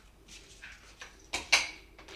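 Sauce spluttering and squirting out of a squeezed sauce bottle: two short, noisy spurts about a second and a half in, the second one louder.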